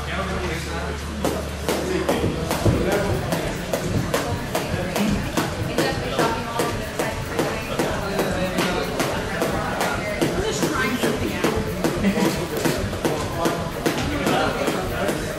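Jump rope slapping the floor in a quick, steady rhythm, over background music and voices.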